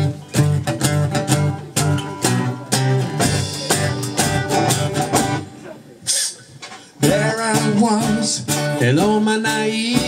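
Acoustic guitar strummed in a steady rhythm as the live intro to a song. A man's singing voice comes in about seven seconds in, over the guitar.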